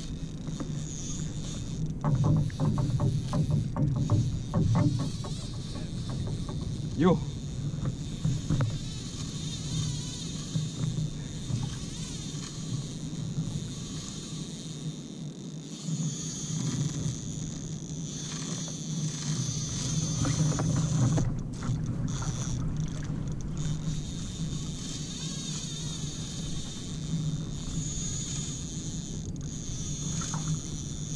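Spinning reel being wound on a kayak while a hooked fish pulls against the line, with water against the hull. A run of clicks comes a few seconds in.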